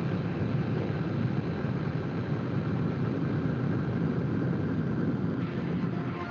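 A steady, low noisy rumble, strongest in the bass, with no clear tune or beat.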